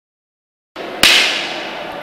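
A single sharp smack of a cane strike about a second in, after a short rush of noise, with a bright hissing tail that fades. The sound then cuts off abruptly.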